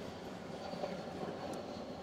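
Faint, steady rubbing of a microfiber towel wiped across a leather car seat.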